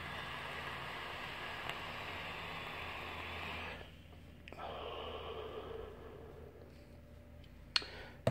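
A long drag of nearly four seconds on an e-cigarette mod, a steady breathy hiss of air drawn through the atomiser. After a short pause comes a softer exhale of about two seconds that fades out.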